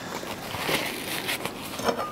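A knife cutting through a slice of Tashkent melon on a plate: a scratchy, hissing cutting noise through the middle, then a short click near the end.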